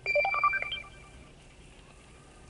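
Short electronic alert: a quick run of beeping tones that steps up in pitch over less than a second, then stops.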